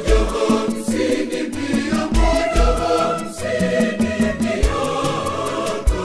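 Church choir singing an upbeat gospel song over a backing track, with deep bass drum hits and a steady cymbal beat.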